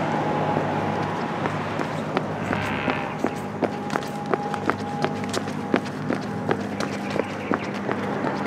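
Quick footsteps on a concrete sidewalk, about three steps a second, becoming clear about three seconds in, over a steady low hum.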